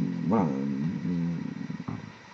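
A man's voice saying "voilà" and trailing into a drawn-out hesitation sound, followed by a single sharp click near the end.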